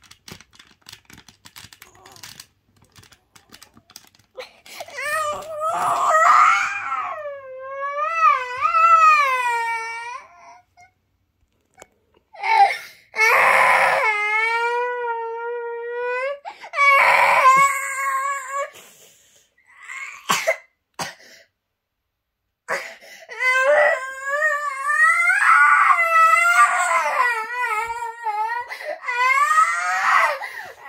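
A young child crying in long, high wails, in several bouts with short pauses between, starting about five seconds in. This is frustrated crying over a toy he could not manage.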